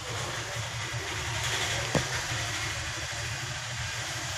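A steady low machine hum with an even hiss, and a single sharp click about two seconds in.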